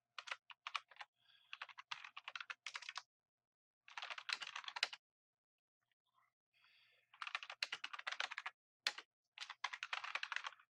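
Computer keyboard typing in quick runs of keystrokes, with a pause of about two seconds midway.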